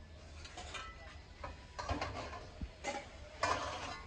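Hammered brass kadai being handled and set down among metal vessels on a shelf: several metallic clinks and scrapes, the loudest about three and a half seconds in.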